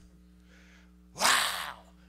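A man's breathy, exhaled exclamation "Wow", gasp-like, about a second in, after a soft intake of breath.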